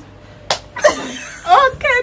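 A single sharp hand slap about half a second in, the smack given for a wrong answer in the game, followed by laughter.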